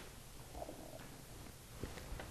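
Very quiet studio room tone: a faint steady hiss, with a soft faint tick near the end.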